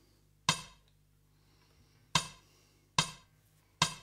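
Count-in clicks on a drums-and-bass backing track: four sharp wooden clicks at a slow, even tempo, the last three a little under a second apart, with near silence between them.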